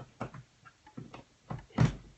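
Handling noises as a light's cord is plugged back into an outlet: a few light clicks and knocks, then a louder dull thump near the end.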